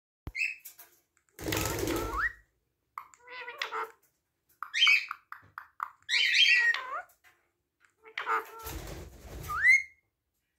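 A pet parakeet mimicking human speech in short Hindi-sounding phrases, broken up by whistles that rise in pitch about two seconds in and again at the very end. There is a laugh-like "ha" near the end.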